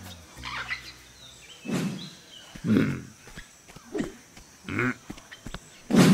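An animal's short, low grunts, about five of them roughly a second apart, the loudest near the middle.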